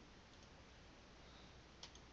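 Near silence: a low steady hiss, with two faint short clicks about a third of a second in and a sharper pair of clicks near the end.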